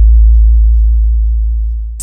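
Deep sub-bass tone from a DJ sound-check bass remix, held steady with a slight wobble. It fades down near the end.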